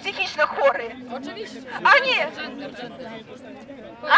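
Indistinct chatter of a small crowd, several people talking at once, with one voice rising louder about halfway through.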